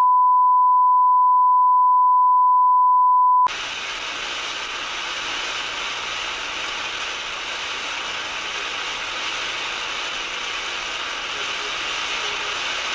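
Television colour-bars test tone, one steady pure beep, cuts off about three and a half seconds in. It gives way to the steady hiss of TV static (snow).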